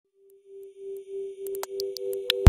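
Opening build-up of an intro sound design: a steady electronic tone with a low rumble swelling in waves and scattered high ticks, growing louder.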